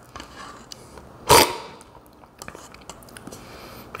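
A short, loud slurp of brewed coffee sucked from a cupping spoon about a second in, the way cuppers spray coffee across the palate to taste it, followed by faint small clicks.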